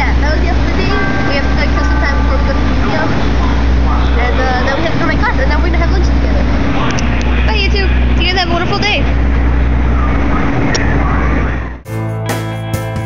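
Busy city street noise: a loud low rumble of traffic that swells and eases, with people's voices over it. Music starts abruptly just before the end.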